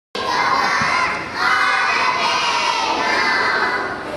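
A chorus of young children singing loudly, holding two long notes, the second about two seconds long.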